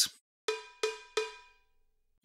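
Sampled cowbell of the EZdrummer drum plug-in (MIDI note 56) struck three times, about a third of a second apart, each hit ringing briefly.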